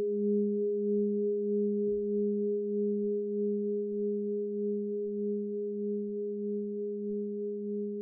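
Giant hammered Tibetan singing bowl (13.5 inches across, 3635 g) ringing on after a mallet strike: a deep steady tone with a second tone about an octave above it, wavering in a regular spinning pulse about twice a second and fading slowly.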